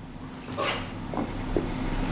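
A household pet whining faintly, two short cries in the second half.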